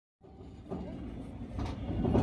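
Silence at a cut, then the running noise of a moving passenger train, heard from an open coach door, fades in and grows louder.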